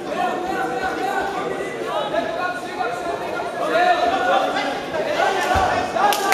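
Indistinct overlapping voices: spectators and coaches talking and calling out, with the echo of a large hall.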